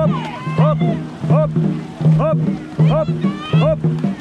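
Dragon boat crew racing flat out, with a loud rhythmic shouted call on every stroke, about four every three seconds, over the splash of paddles and churning water.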